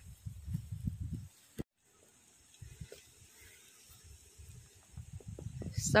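Irregular low rumble of wind on the microphone for about a second, then a brief cut-out and faint, quiet outdoor background with a few soft low knocks.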